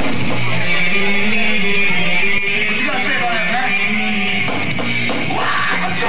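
Hardcore metal band playing live: a distorted electric guitar riff over drums, with a drop in loudness about two and a half seconds in.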